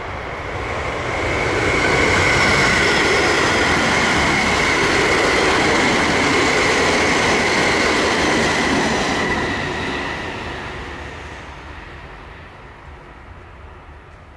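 A ten-car JR West 223 series 2000 electric multiple unit, a six-car set coupled to a four-car set, passing close by. Its running noise builds over about two seconds and holds loud with a steady high tone over the rush of the wheels. It then fades away from about ten seconds in as the train recedes.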